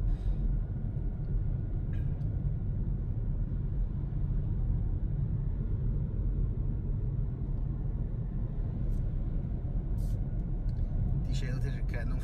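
Steady low road and tyre rumble inside the cabin of a Hyundai Kona Electric cruising on a country road, with no engine note, and a few faint clicks.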